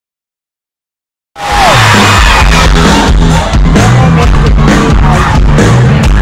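Dead silence, then about a second in loud live pop concert music cuts in abruptly, with a steady beat, a prominent bass line and a crowd's voices, recorded close to full level.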